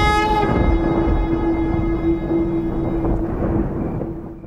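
Dramatic background score: a sustained horn-like drone over a low rumble, with a brighter, many-toned chord that ends about half a second in. The drone fades near the end.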